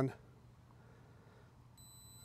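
A single short, high-pitched electronic beep near the end, from the Holy Stone HS360S drone's remote controller as it powers on.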